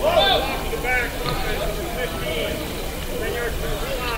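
Background chatter of several people's voices talking over one another, over a steady noisy rumble from an open microphone.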